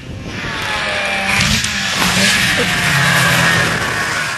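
A vehicle engine revving, its pitch rising over the first second, with a loud rushing hiss over it from about a second in.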